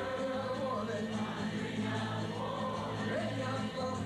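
A twelve-string acoustic guitar strummed while a man sings a folk song and an audience sings along with him as a crowd chorus.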